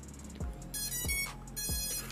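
About three short, high electronic beeps, with small plastic clicks as a battery is pushed into an MJX Bugs 3 Mini quadcopter.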